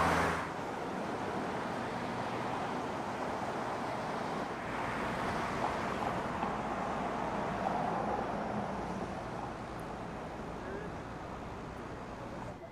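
Road traffic: cars passing on a city street, a steady wash of tyre and engine noise that swells as vehicles go by in the middle and eases off near the end.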